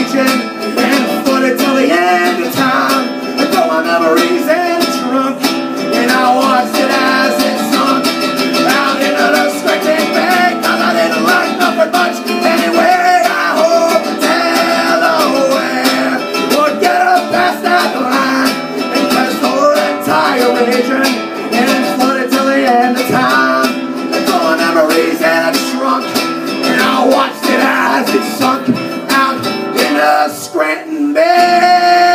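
Acoustic guitar strummed in a steady, continuous rhythm, with a man singing along into a microphone.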